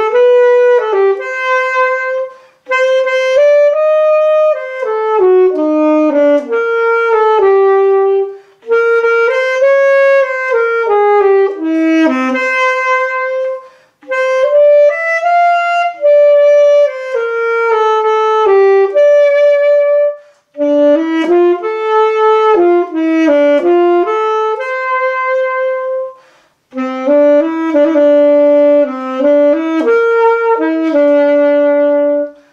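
Solo alto saxophone playing a slow, unaccompanied melody in phrases of about six seconds, each ending in a short breath pause.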